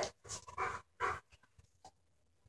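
A large dog breathing in a few short, noisy panting puffs, with its muzzle at the handler's hand as it takes a treat. The puffs fall mostly in the first second and a bit.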